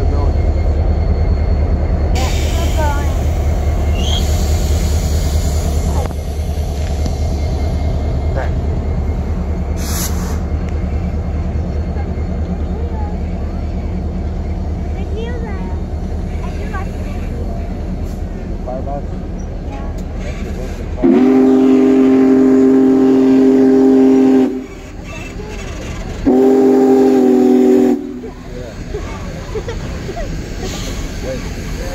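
Slow-moving Union Pacific train backing past: a steady low rumble of the diesel locomotive and the cars rolling on the rails. About 21 seconds in, the train sounds two long multi-tone horn blasts a couple of seconds apart, the second shorter.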